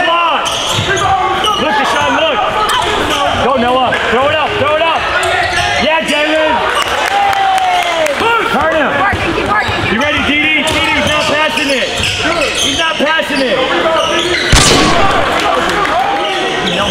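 Indoor basketball game play on a hardwood court: a basketball bouncing, many sneakers squeaking in short rising and falling chirps, and players and spectators calling out. There is one loud bang near the end.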